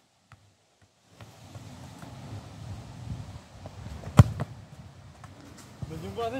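A single sharp thud, a football being struck, about four seconds in, over faint outdoor background noise.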